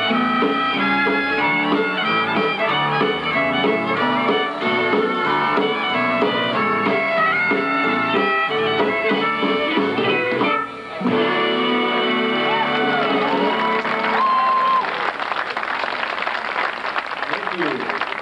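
A western swing band playing with several fiddles, saxophones, guitar and drums. The tune stops briefly about eleven seconds in, picks up again and ends a few seconds later. Clapping from the audience follows.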